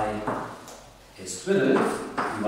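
A man speaking, with a short pause about a second in, over chalk knocking and scraping on a blackboard as he writes.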